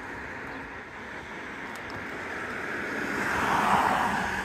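A car passing close on the street, its tyre and road noise swelling to a peak near the end.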